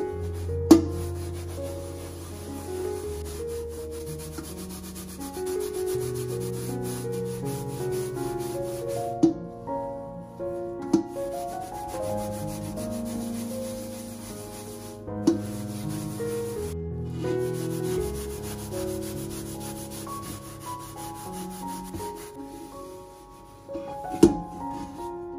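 Scouring sponge scrubbing the burnt bottom of a metal pan, a continuous rasping rub, with a few sharp clicks along the way. Soft background music plays under it.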